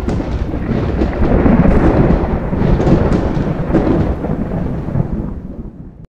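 Thunderstorm: heavy thunder rumbling continuously with rain, fading over the last second and then cutting off abruptly.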